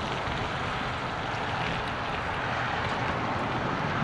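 Steady outdoor ambience, an even hiss with no distinct events, from wind and road traffic around a parking lot.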